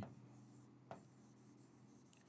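Near silence: faint room tone with a low hum, and a single faint tap a little under a second in from a pen writing on the interactive board.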